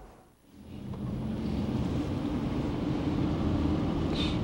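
Steady low rumble of a car driving, heard from inside the cabin, starting about half a second in.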